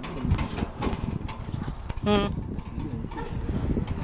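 Small metal clicks and rattles of a padlock and keys being worked at the latch of a roll-up storage-unit door, under low talk, with a brief voiced sound about two seconds in.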